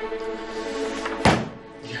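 Dramatic background music with held string chords, cut off by one loud low thud a little over a second in, after which it drops away.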